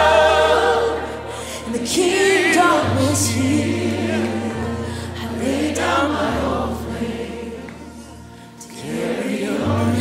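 Live gospel worship music. A woman sings a lead line with vibrato over a choir, backed by sustained low bass notes that shift every second or two. It softens around eight seconds in, then swells again.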